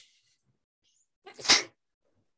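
Near silence, broken about a second and a half in by a single short, sharp burst of breath noise from one person on the call.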